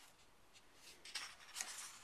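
A photobook page being turned by hand: a faint rustle and swish of paper starting about halfway through, with two slightly sharper flicks in it.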